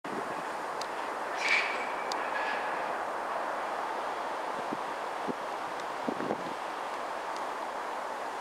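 Tyne and Wear Metrocar electric train running steadily as it pulls away. There is a brief high squeal about a second and a half in and a few short knocks later on.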